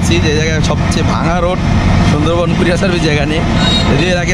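Voices talking over the steady low running of an auto-rickshaw's engine, heard from inside its open cabin in traffic.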